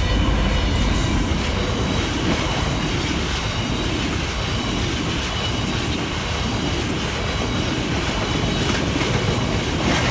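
A DB Cargo Class 66 diesel locomotive passes close by, its two-stroke engine loudest in the first second. A long train of oil tank wagons follows, rumbling steadily with a clickety-clack of wheels over the rail joints.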